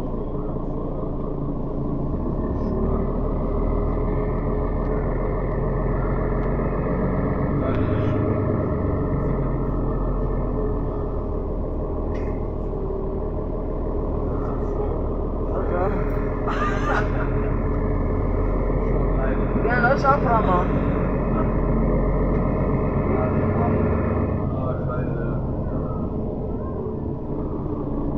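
Inside a moving city bus: the steady drone of the bus's engine and drivetrain with road noise, with passengers' voices heard briefly in the background twice in the second half.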